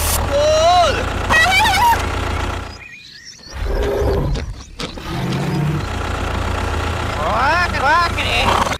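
Low, steady engine rumble standing in for the toy tractor's engine, breaking off briefly near the middle. High, squeaky voice-like sounds glide up and down over it near the start and again near the end.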